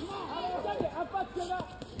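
Speech: indistinct voices talking or calling out over the arena background.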